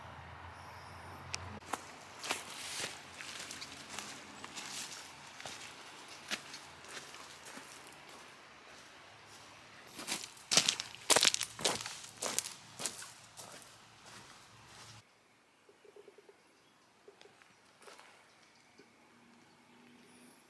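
Footsteps crunching on loose pebbles and dry fallen leaves, irregular steps that are loudest about halfway through. After about fifteen seconds it falls much quieter, leaving faint outdoor background with a few small scattered sounds.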